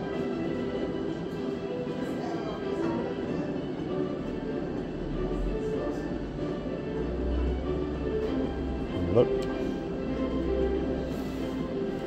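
Fishin' Frenzy slot machine's electronic game music playing steadily while the reels spin on autoplay.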